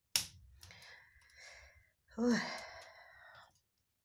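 A woman's sigh: a sharp breath in, then about two seconds in a longer, louder voiced breath out.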